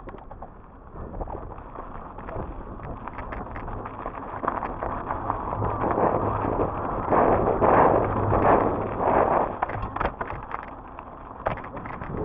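Mountain bike ridden fast down dirt singletrack: tyres rolling over dirt and leaf litter, the bike rattling and clicking over bumps, and wind rushing over the camera microphone. It grows louder to a peak about seven to nine seconds in, then eases.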